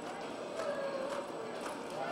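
Hoofbeats of a reining horse loping on soft arena dirt: muffled strikes about every half second.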